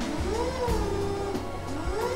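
Electric motor of a Crown reach truck whining, its pitch rising and falling as it speeds up and slows down, once and then starting again near the end, over background music.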